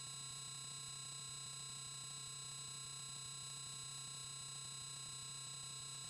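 Steady low electrical hum with a faint high-pitched whine on a cable TV audio feed, with no program sound over it. It is the background noise of a poor cable line.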